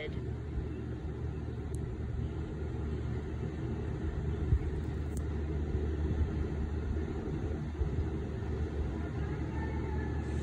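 A steady low rumble, swelling slightly in the middle and easing again toward the end.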